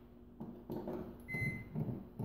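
Faint handling noises: soft bumps and rubbing as a microwave's power cord is worked up through a drilled hole into the wooden cabinet above, with a brief faint high tone about a second and a half in.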